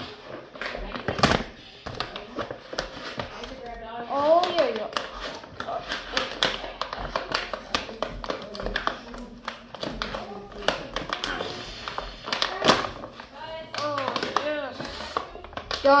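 Foil bag crinkling and crackling as it is pulled and torn at to get it open, with short bursts of a voice at moments; it gives way near the end.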